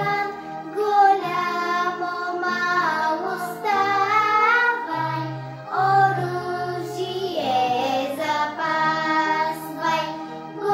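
A young girl singing a song in Bulgarian with sustained, gliding notes, over a recorded instrumental backing with a steady bass line.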